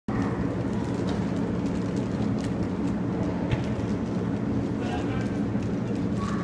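Indoor soccer game heard in an echoing arena: a steady low hum with faint players' voices, and a few sharp thuds of the ball being kicked about one, two and a half, and three and a half seconds in.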